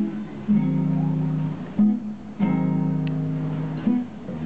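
Solo acoustic guitar strummed: sharp strummed chords, two of them left to ring for more than a second each.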